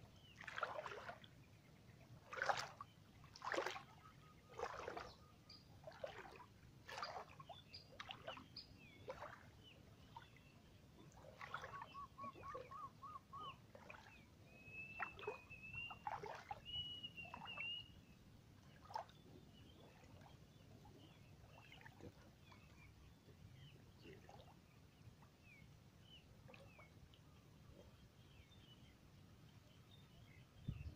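Wading through knee-deep floodwater: regular splashing steps about once a second that fade over the first ten seconds. Then birds call, a quick trill and a few higher whistled notes, with faint scattered chirps after.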